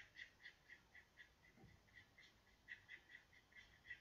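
Faint, high chirping from a small animal, short chirps repeating about four times a second over near silence.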